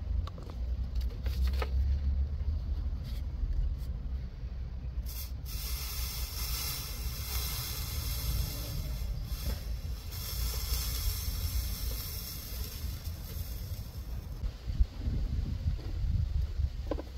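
A hiss from a ground-cable joint being soldered, as flux and solder heat up and smoke. It starts suddenly about five seconds in and stops after about ten seconds, with a low rumble underneath throughout.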